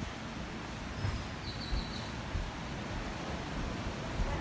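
Steady outdoor ambience of ocean surf and breeze with a low rumble, and a short high chirp between one and two seconds in.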